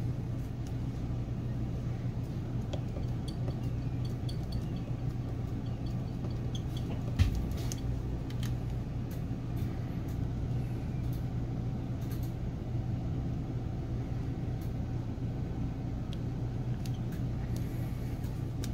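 A steady low hum runs throughout, with light clicks and taps of clear acrylic stamp blocks being handled and set down on a craft mat. One sharper knock comes about seven seconds in.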